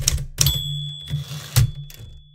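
Typewriter sound effect for a podcast intro: a few sharp key clacks, then a high bell ding about half a second in that rings on.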